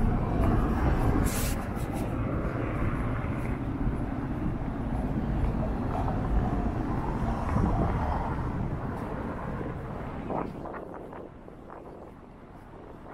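City street traffic: a steady rumble of passing cars and engines, fading over the last couple of seconds.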